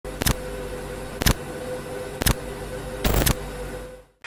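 Electronic countdown sound effects for a video intro: a sharp glitchy hit once a second, four in all with the last one longer, over a steady low electronic hum that fades out at the end.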